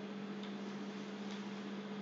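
Steady electrical hum over hiss, with two faint clicks about half a second and a second and a quarter in.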